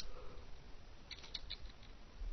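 Light keystrokes on a computer keyboard: a short run of about four quick taps a little over a second in, with a faint click at the very start.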